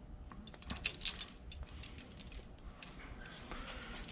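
Faint, scattered light metallic clinks and ticks, thickest during the first second or so, from the hanging chain and gambrel shifting as a sharpening steel is worked between a raccoon's hide and its back leg.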